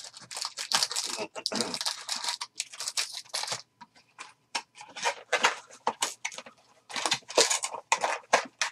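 Crinkling and rustling of shiny foil-wrapped trading-card packs being handled, pulled out of an opened cardboard hobby box and stacked. The rustling is dense for the first few seconds, then comes in shorter bursts.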